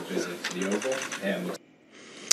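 Speech from a news report, quieter than the surrounding narration, breaking off about one and a half seconds in at an edit and followed by a brief near-silence.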